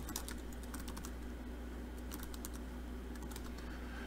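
Computer keyboard keys clicking in short, irregular runs of keystrokes as a command is typed, with brief pauses between runs.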